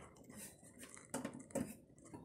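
Two faint short clicks or knocks, about a second in and again half a second later, over quiet workshop room tone.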